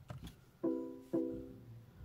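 BMW i3 warning chime sounding twice: two ringing tones about half a second apart, each fading out. It comes as the car's instrument cluster lights its warning lamps.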